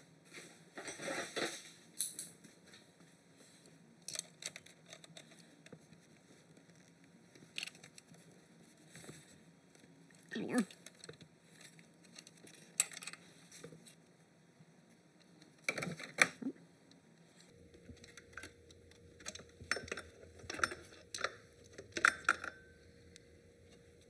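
Scattered metal clicks, clinks and light scrapes of pliers gripping and turning out a timing-belt tensioner and its stud.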